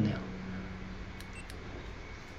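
Quiet room tone with a steady low hum, and a couple of faint clicks about a second and a half in from a hand handling the GoPro Hero 8 action camera.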